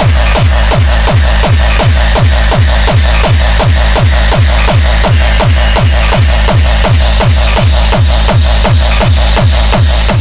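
Hardcore techno in a DJ mix: a heavy kick drum about three times a second, each hit sweeping down in pitch, under a dense, noisy high end.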